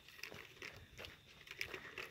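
Faint footsteps crunching on a gravel trail, a few steps roughly half a second apart.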